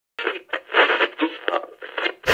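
Tinny, narrow-band sound like an old radio or telephone speaker, coming in choppy bursts a few times a second.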